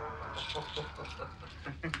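Laughter: a voice sliding down in pitch, then quick repeated chuckles several times a second.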